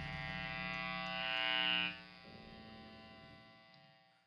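The last chord of a rock song ringing out on electric guitar and bass through their amplifiers: several held notes, with a high tone swelling, cut off abruptly about two seconds in.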